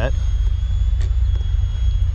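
Distant 80mm electric ducted fan of a radio-control jet giving a thin, steady high whine, over a heavy low rumble.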